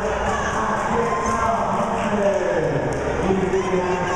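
Crowd chatter: many spectators talking at once in a gymnasium, a steady hubbub of overlapping voices.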